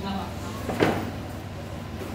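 A single short thump about a second in, over a steady low hum.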